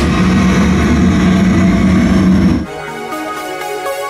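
Gas flame effect firing a fireball, a loud rushing roar that stops abruptly about two-thirds of the way in, followed by electronic background music.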